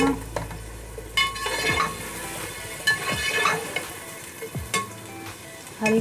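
Potato chunks and tomato-onion masala sizzling in an aluminium pot while a long perforated metal spoon stirs them, with repeated scrapes and knocks of the spoon against the pot.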